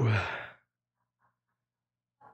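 A man's exclaimed "woo!", falling steeply in pitch and trailing off into a breathy sigh that fades within the first half second, followed by near silence.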